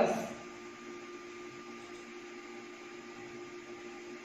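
A steady electrical hum with faint room noise, holding one level throughout.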